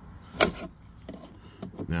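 A sharp plastic click about half a second in, then a few faint ticks, as a plastic trim pry tool is worked under a round plastic trim cap on an interior panel.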